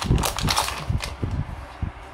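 Plastic packaging bag crinkling and rustling as it is opened and a nylon running belt is pulled out, a run of sharp crackles that thins out toward the end.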